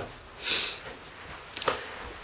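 A man's short intake of breath: a brief hiss about half a second in, then a faint click near the end.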